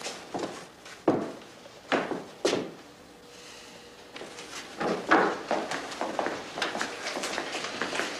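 Scattered sharp knocks and clatter of movement and handling: a few separate knocks in the first three seconds, a short lull, then a denser run of knocks and rustling through the second half.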